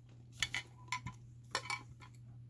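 A few light clicks and knocks of handling as a plastic-wrapped metal mini tin and a folding knife are picked up, over a steady low hum.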